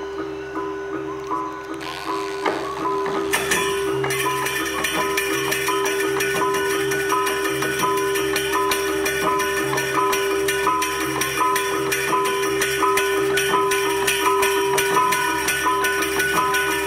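Balinese gamelan ensemble playing: bronze metallophones ring a fast repeating figure over a steady held note. About three seconds in the fuller ensemble enters with brighter, denser percussion and the music grows louder.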